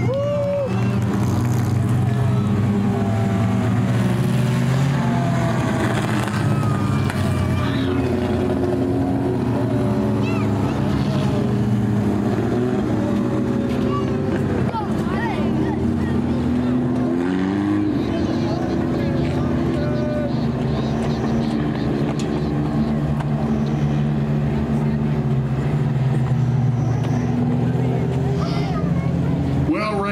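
Several four-cylinder dirt-track race car engines running steadily at low speed as the cars circle the track together, with one engine's pitch rising partway through.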